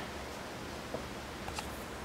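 Quiet room tone with a faint steady hum and a couple of small faint clicks, about one second in and again a little later.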